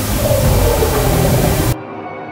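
Loud film action soundtrack: a dense rumbling wash of sound effects with music under it, cutting off suddenly near the end.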